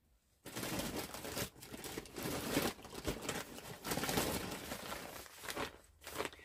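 Plastic packaging crinkling and rustling as a packaged item is handled and pulled out, starting about half a second in and going on unevenly until just before the end.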